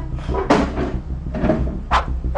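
A few sudden knocks, the sharpest about half a second in and just before the end, over a low, steady pulsing bass.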